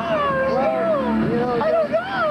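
A person wailing loudly, mouth wide open, the voice sliding up and down in several long, wavering cries.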